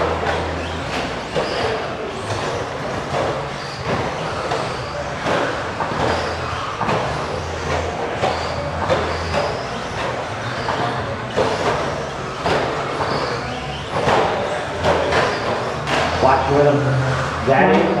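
Several 1/10-scale electric stadium trucks racing on an indoor dirt track: brushless motors whirring and tyres running on the clay, with a steady stream of short knocks from the trucks and a murmur of voices behind.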